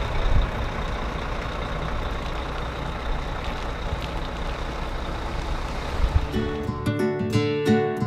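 Steady low rumble and hiss of traffic stopped on the road, with a tour bus close by. About six seconds in, acoustic guitar music starts with picked notes.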